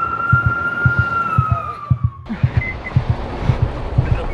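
A single siren wail that rises, holds and slowly sags, then cuts off suddenly about halfway through, over background music with a low, pulsing heartbeat-like beat.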